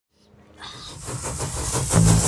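An approaching commuter train on the rails, a rushing noise swelling steadily louder as it nears.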